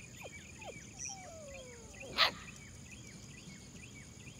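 Steady high-pitched buzzing and rapid faint chirping of insects in the grass, with a few faint falling whistle-like calls. About two seconds in, one short sharp sound stands out as the loudest thing.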